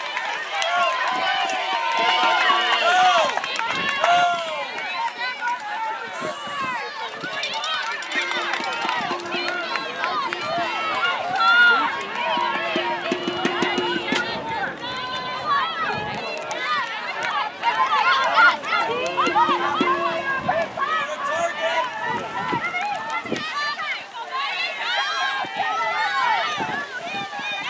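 Many voices of a sideline crowd shouting and calling out at once, overlapping continuously without clear words.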